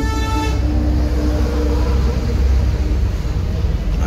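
A short vehicle horn toot right at the start, then a fainter steady tone held for about three seconds, over a steady low rumble.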